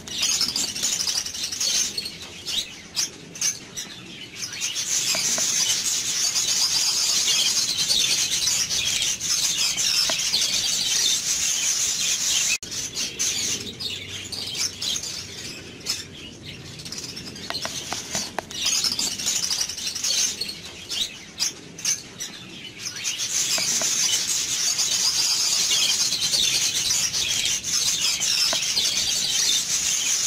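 Many small birds chirping together in a dense, high-pitched chatter that thins out and swells again, with a brief cut about twelve seconds in.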